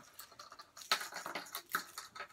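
Hard plastic jerkbait lures and their treble hooks being handled, giving a few faint, irregular clicks and ticks.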